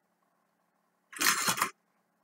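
Wire strippers pulling the insulation off a thin wire: one short rasping scrape of about half a second, a little after a second in.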